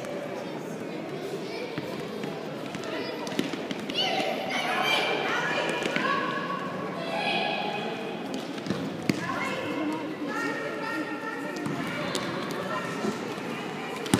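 Echoing indoor sports-hall din of a children's futsal game: high-pitched voices calling out in long shouts, with the ball thudding on the hard floor, sharpest about nine seconds in.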